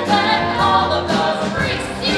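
Musical theatre number: several voices singing together over instrumental accompaniment, loud and continuous.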